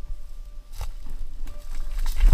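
Footsteps on loose stones and dry brush, with a low rumble of wind and handling on the microphone and a couple of sharp clicks. A faint steady tone sits underneath.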